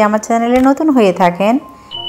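A woman speaking, then near the end a short electronic bell-like ding made of steady pure tones, a sound effect that goes with a like-and-subscribe request.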